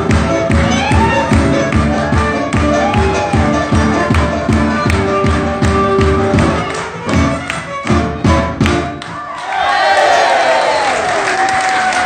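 Gypsy band playing live, a violin over a steady driving beat. About nine seconds in the tune ends and the audience cheers and applauds.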